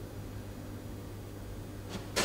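Quiet room tone: a steady low hum under faint hiss, with a faint click near the end.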